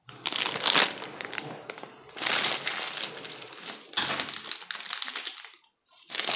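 Plastic candy packaging crinkling as it is handled, in three stretches with short pauses between.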